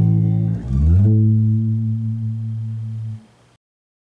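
Electric bass guitar slides up about a second in to the song's final A minor note, holds it and lets it ring. The note fades and cuts off shortly before the end.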